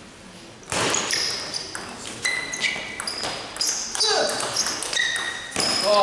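A table tennis rally starting about a second in: a quick run of sharp, ringing pings as the celluloid-type ball strikes rubber bats and the table top, echoing in a sports hall. A louder burst of voices comes near the end.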